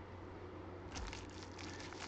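Bubble wrap crinkling faintly as it is handled and unrolled, starting about a second in.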